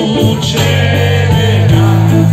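Live band playing loud through the PA, electric guitars over a double bass holding long low notes, heard from among the crowd.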